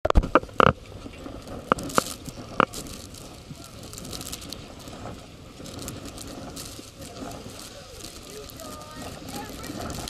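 Wind buffeting the microphone, with a few sharp clicks and knocks in the first three seconds and faint voices of people talking nearby later on.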